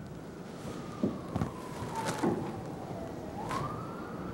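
An emergency-vehicle siren wailing: one tone that falls slowly in pitch, then sweeps back up near the end. A few soft thumps and knocks come in the first half.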